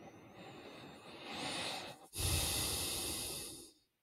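A man's long, deep breath close to the microphone: a rising in-breath, a brief catch about two seconds in, then a louder out-breath lasting over a second.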